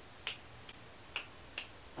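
Fingers snapping in an even, unhurried rhythm of about two snaps a second, four snaps in all.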